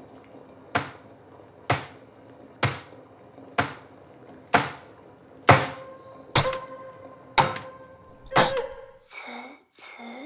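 Heavy chopping strikes on a kitchen cutting board, about one a second, nine in all, growing louder, the later ones leaving a ringing tone.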